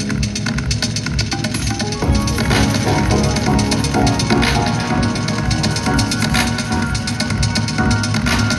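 A live rock band playing loudly through a stadium sound system, heard from within the audience, with a steady fast beat. The music gets louder about two seconds in.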